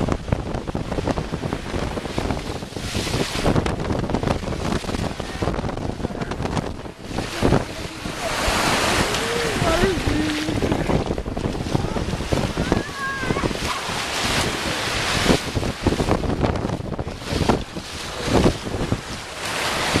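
Wind buffeting the microphone over the steady rush of surf breaking on a sandy shore.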